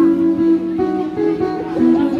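Live band music led by guitars, played through PA speakers, with steady held notes and a change of chord about a second in.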